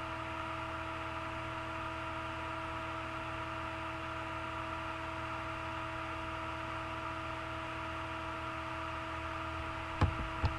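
Steady background hiss and electrical hum with a few faint steady tones, unchanging throughout: the noise floor of a computer's microphone input during a screen recording.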